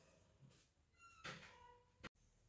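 Near silence: room tone, with one faint, brief pitched sound a little past a second in.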